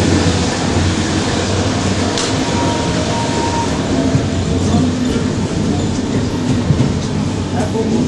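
Steady rumble and hiss of a passenger train running, heard from inside the coach's corridor.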